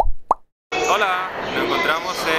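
Two quick cartoon pop sound effects of a logo sting, the second a short upward bloop, then voices start talking just under a second in.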